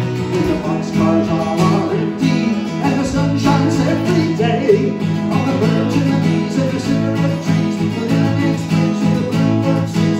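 Acoustic guitar strummed steadily, accompanying a folk song.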